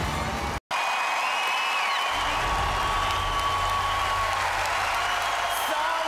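Studio audience cheering and applauding, with whoops over it and music underneath. It begins just after a momentary dropout well under a second in.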